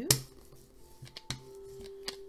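A hand brayer pressing a glued paper postcard flat on a table. There is a sharp tap just after the start, the loudest sound, then a few lighter clicks about a second in and one near the end.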